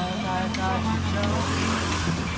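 A Khmer pop song playing, a sung vocal line over a steady low hum, with a brief hiss near the end.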